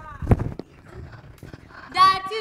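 A short vocal cry from a performer, then a loud thump about a third of a second in and a lighter knock just after, as an actor goes down onto the stage floor.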